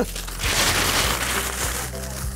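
Newspaper crumpling and rustling as it is stuffed by hand into a crate for cushioning, lasting over a second, with background music underneath.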